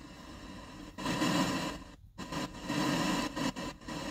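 FM radio static hiss from an aftermarket car stereo head unit tuned to an empty frequency, 87.5 MHz, with no station, playing through the car speakers as the volume is stepped up. The hiss comes in loud about a second in, cuts out briefly just after two seconds, then returns with short breaks near the end.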